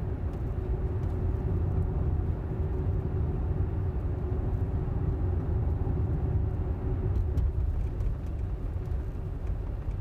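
Tyre and road noise inside a Tesla's cabin at about 29 mph: a steady low rumble with a faint steady hum, and no engine sound.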